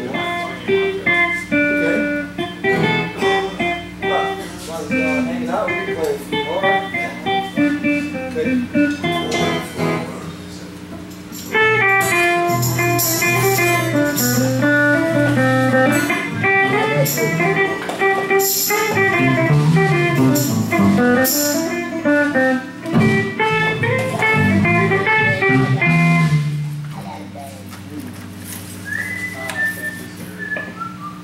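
Electric guitar picking loose single-note runs. About eleven seconds in, bass and drums with cymbals join for a loud instrumental jam that stops a few seconds before the end, leaving a steady amplifier hum.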